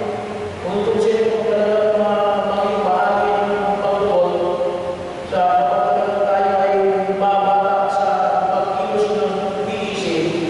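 A man's voice singing or chanting a slow melody into a microphone, in long held notes, with short breaks about half a second in and about halfway through.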